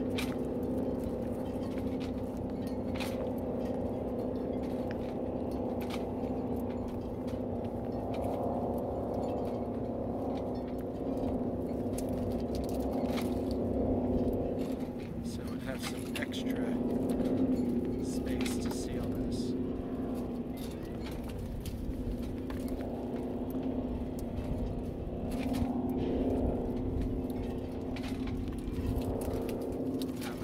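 A steady, low engine drone throughout, with scattered clicks and rustles from self-fusing silicone tape being stretched and wrapped around a clear plastic hose joint.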